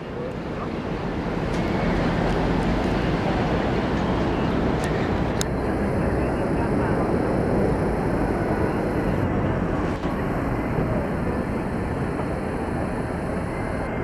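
Steady outdoor ambience of a large city square: a dense, even noise of traffic and distant voices that swells over the first two seconds and then holds.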